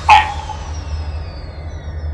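A brief, loud, voice-like cry right at the start, then a steady low electrical hum with a faint high whine slowly falling in pitch.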